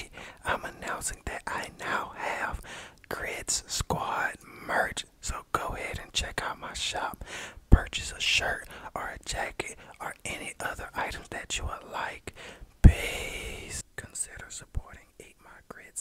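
A man whispering, with a sharp click about eight seconds in and a louder one near thirteen seconds followed by a short breathy rush.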